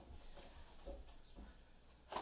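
Near silence, with three faint, soft rustles of cardboard fruit packaging being handled and opened.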